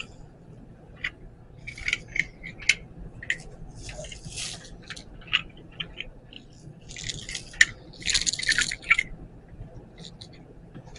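Small plastic pump-dispenser parts clicking and rattling as they are handled and fitted together, with plastic packaging crinkling about four seconds in and again from about seven to nine seconds.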